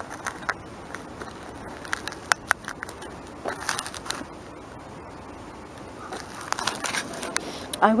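Gloved hands working soil and a small glass bottle in a dig: scattered sharp clicks and crackles with short bouts of scraping.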